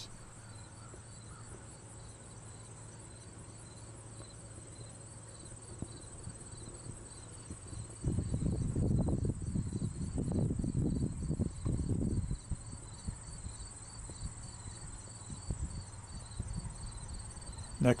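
Insects chirping in a faint, even, rapidly repeating rhythm. A louder low rumble joins them from about eight to twelve seconds in.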